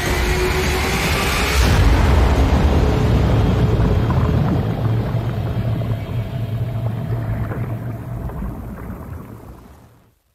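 Trailer sound design: a swelling whoosh that peaks about two seconds in, then a deep rumbling drone with a faint held tone that slowly fades out near the end.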